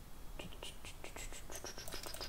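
Computer keyboard typing: a quick run of key clicks starting about half a second in, with faint whispered muttering under the breath.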